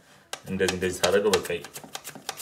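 A raw potato being pushed back and forth over a plastic mandoline slicer's blade: a rapid, even run of short scraping clicks, about six a second, one for each slice cut, settling into its steady rhythm in the second half. A voice talks over the first part.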